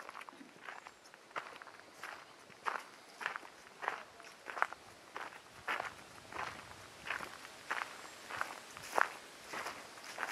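Footsteps of a person walking steadily along a gravel trail, each step a short crunch, about one and a half steps a second.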